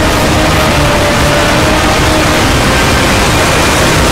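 A loud, steady wall of distorted noise: the soundtracks of many cartoon and meme clips playing over one another at once, with a few faint held tones showing through the din.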